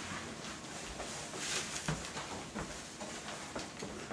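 Quiet room with faint, scattered rustles and light ticks.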